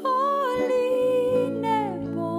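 Song: a woman's wordless, hummed vocal holds one note for about a second and a half, then glides down, over soft sustained chords.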